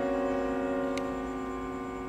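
Bowed string quartet of violins, viola and cello holding a single sustained chord that slowly fades away.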